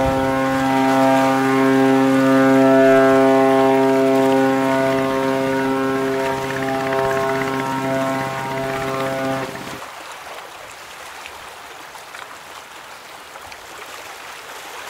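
A ship's horn sounding one long, steady, low blast of about ten seconds, which cuts off, leaving an even water-like hiss.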